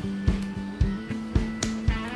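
Background music: guitar with a steady beat of about three to four strokes a second.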